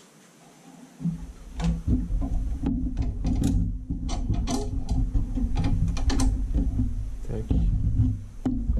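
Hands handling a Solex 3300 moped's painted mudguard against its frame: starting about a second in, rubbing and bumping with a run of sharp clicks and knocks of the metal parts as it is pressed into place.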